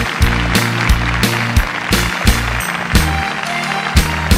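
Korean trot backing track playing an instrumental break: a steady drum beat with bass under sustained instrumental chords, with no singing.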